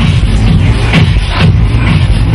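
Loud electronic dance music from a DJ's set over a club sound system, with a heavy, steady bass.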